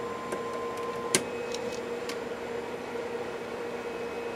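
Steady audio test tones from a two-tone generator over a low hiss. About a second in there is a sharp click, and the upper tone jumps to a higher pitch; a few faint clicks follow.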